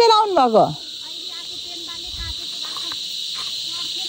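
Insects keep up a steady, high-pitched buzzing drone in the forest. A person's voice calls out during the first second, its pitch falling.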